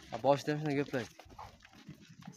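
A sheep bleats once, a short pitched call of under a second.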